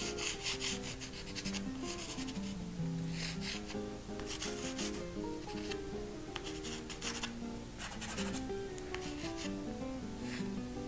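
Soft pastel stick scratching and rubbing across textured pastel paper in repeated bursts of quick strokes, over gentle background music.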